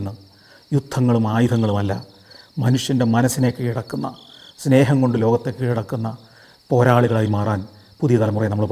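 A man talking in Malayalam in phrases with short pauses, over a steady high chirring of crickets.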